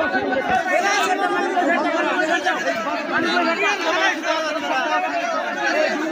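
A crowd of many people talking over one another, a steady jumble of overlapping voices.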